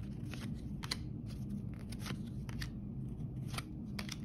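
A stack of Score football trading cards being flipped through by hand, the cards sliding and snapping against each other in faint, irregular clicks.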